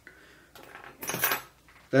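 A brief, light clink and rattle a little after one second in, from small fly-tying tools or a head cement bottle handled on the bench.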